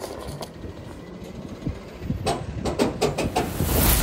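Low, steady rumble of heavy diesel machinery, with a quick run of knocks a little past the middle. Near the end a rushing noise swells.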